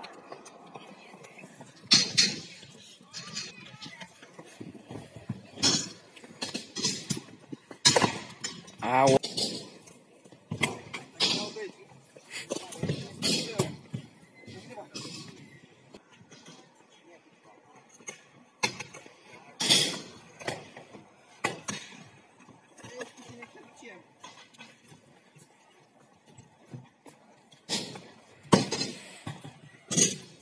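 Stunt scooters clattering on skatepark ramps and concrete: a string of sharp, irregular knocks and metallic clanks as riders land and their decks and wheels hit the surface.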